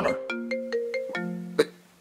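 A mobile phone ringtone: a quick melody of clear, separately struck notes that ends about three-quarters of the way through and dies away.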